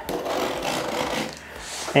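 Small blade cutting through the taped cardboard end of a shipping box: a rasping scrape for about a second and a half that then trails off.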